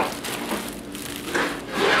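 Rubbing, scraping handling noise as a plastic-bagged stack of tortillas is slid across and lifted off a woven plastic placemat.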